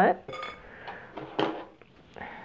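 A light clink with a short ringing, then a single sharper knock about a second and a half in: a paint palette and brush being picked up and handled.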